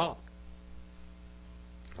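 Steady low electrical mains hum in the recording chain, heard plainly in a pause after the tail end of a man's spoken word.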